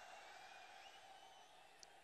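Near silence: a faint steady hiss, with one tiny click near the end.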